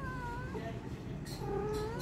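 A kitten mewing twice: a short call at the start and a longer one from a little past halfway, rising in pitch as it ends.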